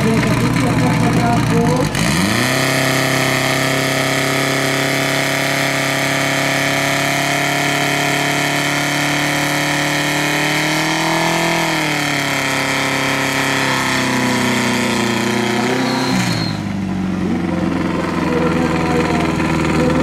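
Portable fire pump's engine revs up sharply from idle about two seconds in and holds a high, steady pitch while it drives water through the hoses, rising briefly near the middle. It drops back to idle about four seconds before the end.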